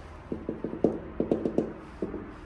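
A gloved hand knocking on a window pane in a rusty steel frame: two quick runs of about five knocks each, every knock ringing briefly.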